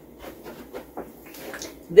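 A few faint, light clicks and taps as a sauce bottle and utensils are handled on a kitchen counter, in an otherwise quiet room.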